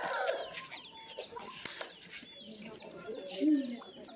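Gamecocks, a Thai rooster and an Aseel, sparring and clucking. A loud call tails off at the start, and a short, loud low call comes about three and a half seconds in. Small birds chirp throughout.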